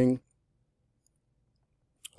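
A man's speaking voice trailing off at the very start, then near silence: faint room tone during a pause in speech.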